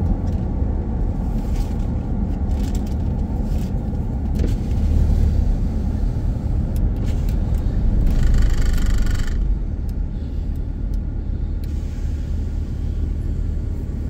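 Car interior driving noise: steady low engine and tyre rumble from the moving car, with a brief hiss about eight seconds in. It gets a little quieter after about ten seconds as the car slows for the road-closure checkpoint.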